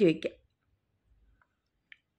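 A voice finishes a phrase right at the start, then near silence, broken only by a single short click near the end.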